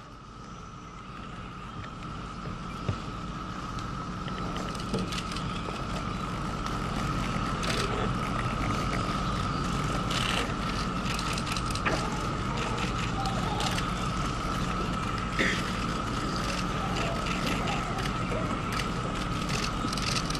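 Irregular clicking of camera shutters over a steady high-pitched hum, growing louder over the first several seconds.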